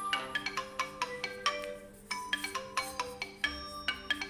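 Xiaomi Mi 11X Pro ringtone playing from the phone's speaker for an incoming call: a looping melody of quick, ringing notes.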